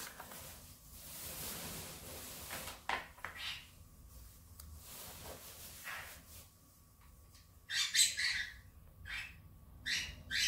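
Paper and tape rustling as double-sided tape is peeled and a paper piece is pressed onto vellum by hand. A pet bird squawks in a few loud, sharp bursts near the end.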